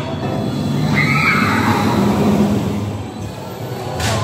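Mandrill Mayhem shuttle roller coaster train running over its track, with themed ride music playing. A shrill cry rises and falls about a second in.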